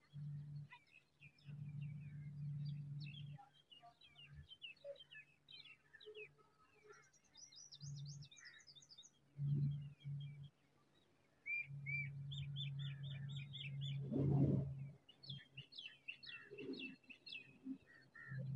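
Small songbirds chirping and trilling in many short notes, including a quick high trill and a fast run of repeated notes. A low hum comes and goes underneath, and a short burst of noise stands out a little after the middle.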